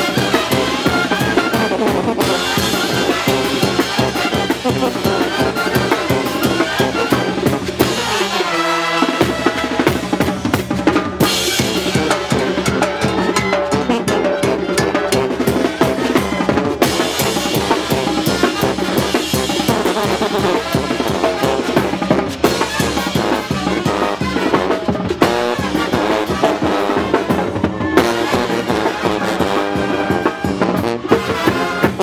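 Oaxacan brass band playing a festive piece, with trumpets, trombones, saxophones and sousaphones over snare and bass drum keeping a steady beat. The drums are prominent, and the bass drops out briefly about eight seconds in before the band comes back in full.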